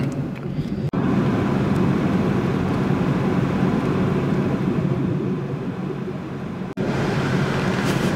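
Steady road and engine noise inside a moving car's cabin, a low hum with no voices. It drops out for an instant about a second in and again near the end, where the recording is cut.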